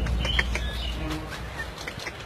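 Small birds chirping: short, scattered high calls, several of them.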